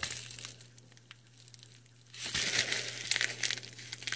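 Plastic packing wrap crinkling as a small wrapped packet is handled. It starts about halfway through, after a quiet stretch with a few faint ticks.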